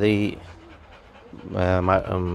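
Rottweiler panting, tired out after a walk.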